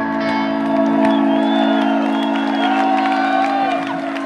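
A live punk band's electric guitars and bass holding a final chord and letting it ring out through the PA, with the crowd whooping and cheering over it.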